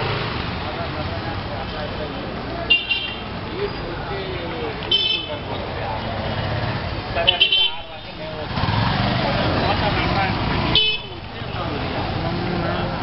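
Busy street traffic with motorcycles and auto-rickshaws running, broken by short vehicle horn honks four times, the third a quick burst of several toots. Passersby's voices run underneath.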